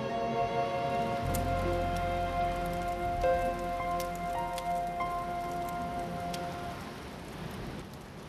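Water splashing and lapping in the dark, with a low rumble and scattered drips, starting about a second in, under soft sustained background music that fades out near the end.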